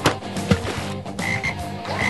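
Frogs croaking, with two sharp knocks: one at the start and one about half a second in.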